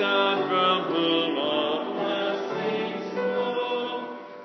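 A group of voices singing a hymn in long held phrases.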